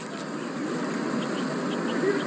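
Steady background hiss of a scene's ambience, even and unbroken, with a few faint high chirps.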